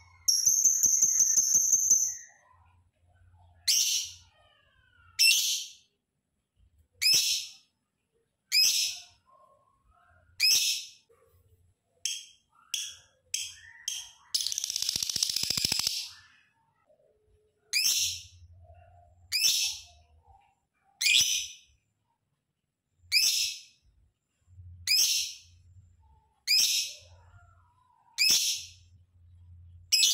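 Lovebird calling: a long, buzzing chatter trill near the start and another about halfway through, with short, shrill, high-pitched calls repeated every second and a half or so in between.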